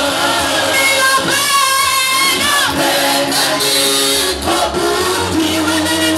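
A worship team singing a gospel song into handheld microphones, a woman's voice leading with other voices joining, with some long held notes.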